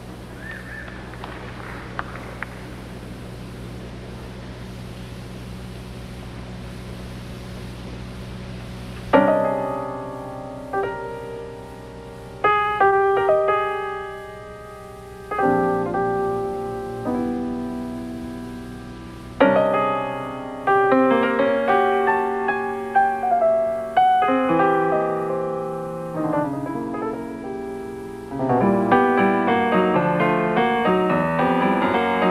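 Solo piano playing a free improvisation. After about nine seconds of steady low hum with a couple of faint clicks, chords are struck and left to ring out one after another, turning into denser clusters of notes near the end.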